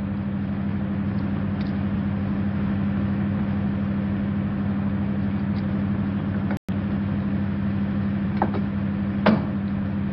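Steady drone of a car engine and road noise, heard as from inside a moving car. The sound cuts out for an instant about two-thirds through, and two faint clicks come near the end.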